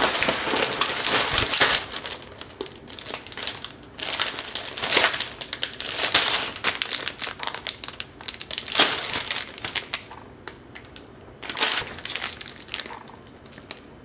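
Plastic packaging and a woven plastic shopping bag crinkling and rustling as groceries are taken out and handled, in irregular bursts that fade near the end.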